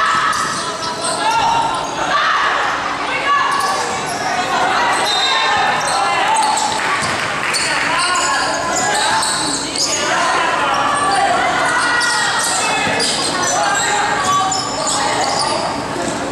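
Basketball being dribbled and bouncing on a gymnasium floor during a game, under a continuous babble of many voices from players and spectators, echoing in a large hall.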